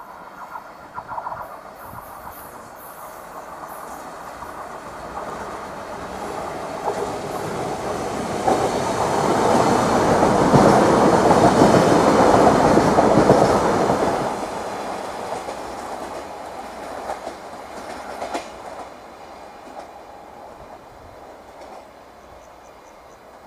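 A train passing by, its wheels clattering over the rail joints. It builds to its loudest about halfway through and fades away over the last few seconds.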